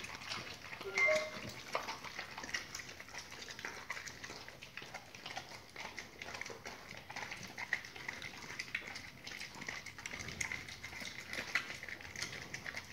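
Two pit bulls chewing and tearing raw duck quarters: wet smacking and crunching in a dense, irregular run of small clicks. A short squeak sounds about a second in.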